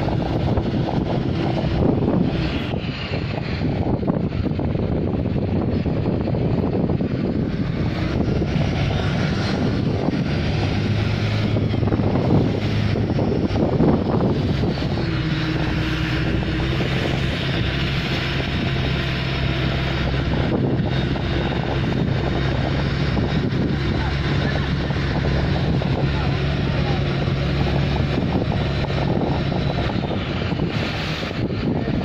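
Motorboat engine running steadily while towing a parasail, with wind over the water. Its note shifts a little in pitch partway through.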